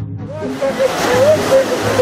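Background music gives way about half a second in to loud splashing from a crowd of swimmers running and wading into the sea at a mass swim start, with shouting and whooping voices over the churning water.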